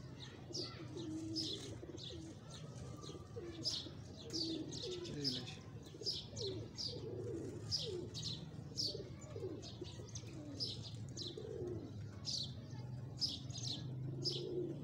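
Pigeons cooing, low warbling calls recurring, with frequent short high chirps of small birds over them, about two a second.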